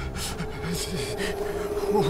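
Cartoon soundtrack: a steady held tone comes in about half a second in, with a string of short, low vocal sounds beneath it.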